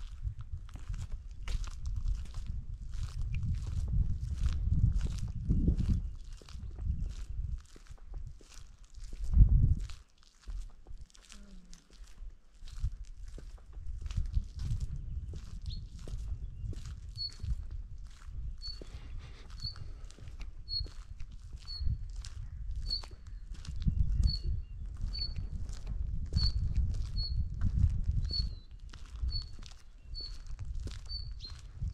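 Footsteps of someone walking at a steady pace, about two steps a second, over a low rumble that comes and goes. From about halfway a bird calls a single high chirp over and over, roughly once a second.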